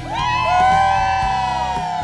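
A small group cheering together in one long drawn-out whoop, several voices held at once and sliding down in pitch near the end, over steady background music.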